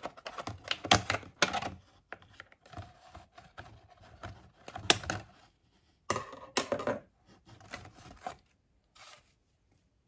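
Hands opening toy packaging: irregular taps, clicks, crinkles and tearing of plastic and paper, in short bursts with brief pauses, thinning out near the end.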